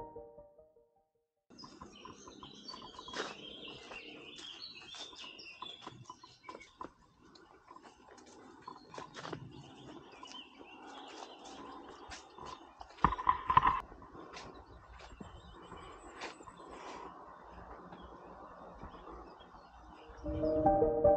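Birds chirping in a forest, faint and scattered over a quiet outdoor background. About two-thirds of the way through comes a short, louder burst of knocks.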